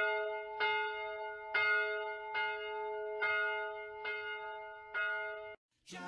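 A single bell tolling, struck on the same note about once a second with each stroke ringing on into the next, then cut off abruptly about half a second before the end.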